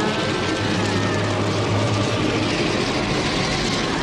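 War-film soundtrack: music over a dense, noisy rumble with a steady low hum throughout.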